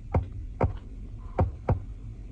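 Climate-control touchscreen being pressed several times: four short falling blips, irregularly spaced, over a low steady hum.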